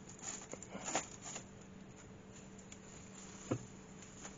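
Faint crinkling and a few light clicks from a plastic carrier bag weighed down with a large cabbage as it hangs from a hand-held hook scale, most of it in the first second and a half, with one more click near the end.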